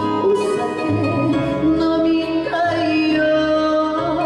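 A woman singing a Japanese popular song into a handheld microphone over backing music, holding long notes with vibrato, one stepping up in pitch a little past halfway.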